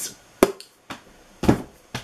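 A hardcover book being handled and set down: a sharp tap, a faint click, then a duller knock about a second later.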